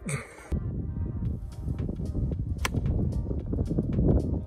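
Wind rumbling on the phone's microphone out on the fairway, under background music, with one sharp crack about two-thirds of the way in: a golf iron striking the ball on an approach shot.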